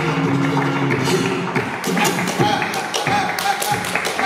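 Flamenco guitar playing, giving way about two seconds in to a quick run of sharp percussive strikes from the dancer's footwork and hand-clapping (palmas).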